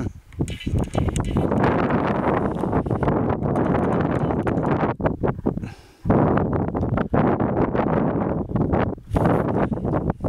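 Wind buffeting the camera microphone in loud, rough gusts, with a brief lull about six seconds in.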